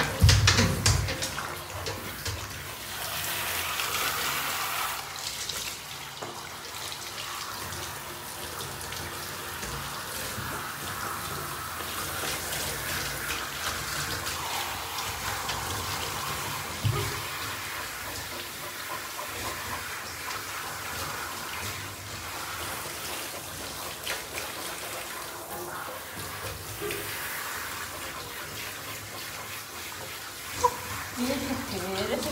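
Water running steadily from a handheld shower into a bathtub as a dog is washed, with a loud thump right at the start.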